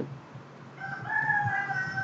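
A long, held call with a clear pitch, starting just before a second in, stepping up a little in pitch and then holding steady.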